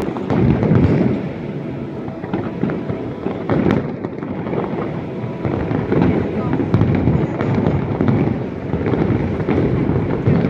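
Aerial fireworks bursting in rapid succession: a continuous low rumble of booms with sharp crackles throughout, swelling louder around the first second and again near the end.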